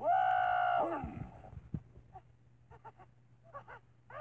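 A voice lets out one loud scream, held at a steady pitch for about a second before it drops away, followed by a few faint short clicks.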